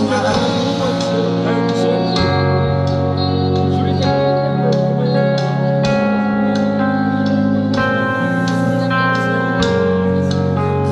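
Live pop-rock band playing: electric guitar, bass guitar and drums, with sustained guitar notes over a bass line that changes every second or two.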